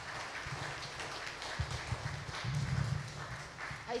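Congregation applauding, a dense patter of many hands clapping that dies away near the end.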